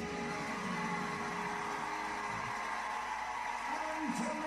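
Television show audio played back in the background: a steady noisy wash with faint music under it.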